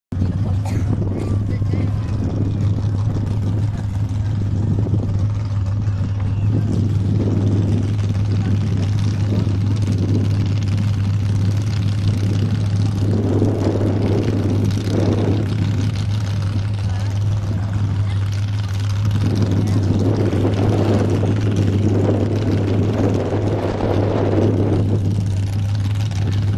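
Off-road 4x4's engine revving in repeated rising and falling swells as it works through a mud pit, loudest about halfway in and again over the last several seconds, over a steady low hum and background voices.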